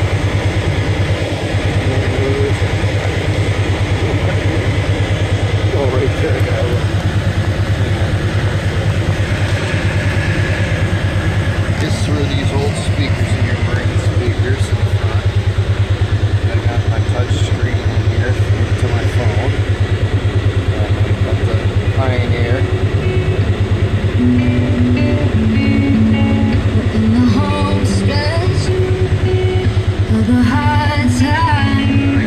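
Polaris side-by-side engine idling steadily, heard from inside the cab, with the machine's aftermarket stereo playing music over it. The music comes through more clearly near the end.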